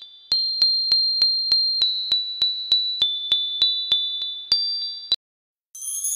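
Timer sound effect: high, bell-like ticks, each with a short ringing ding, about three a second, cutting off suddenly about five seconds in. Near the end a rising, shimmering whoosh follows.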